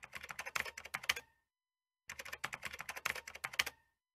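Computer keyboard typing: two runs of quick key clicks, each about a second and a half long, with a short pause between them.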